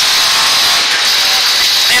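Pinto-engined Ford Escort Mk2 rally car heard from inside the cabin at stage speed: a loud, steady engine drone under load, mixed with road and transmission noise.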